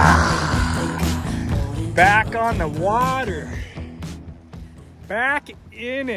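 Background music with steady low tones that fades down after about four seconds, with a few swooping, wordless vocal sounds over it.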